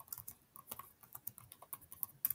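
Faint typing on a computer keyboard: a quick, irregular run of key taps and clicks.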